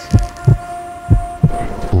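Heartbeat sound effect: two low double thumps about a second apart, over a steady high hum.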